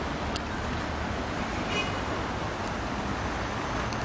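Steady noise of road traffic, an even wash of passing cars with no single vehicle standing out.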